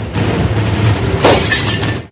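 News-channel 'breaking news' transition sound effect: a noisy rising rush over a low rumble, with a sharp crash-like hit about a second and a quarter in, cutting off suddenly at the end.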